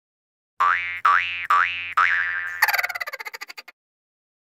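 A comic sound effect: four quick twangy notes whose pitch springs upward, then a rapid fluttering run that fades out.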